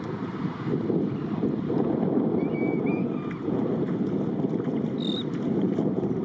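Steady low rush of wind on the microphone, with faint short whistled notes in the middle and one short, high, clear call from an American oystercatcher about five seconds in.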